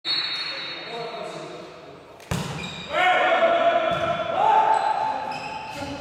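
A volleyball struck hard once, echoing in a large sports hall, about two seconds in, followed by players shouting and calling during the rally.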